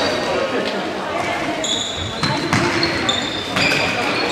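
Players' shoes squeaking on a sports-hall floor during indoor youth football: several short, high squeaks, with thuds of the ball being kicked, echoing in the large hall.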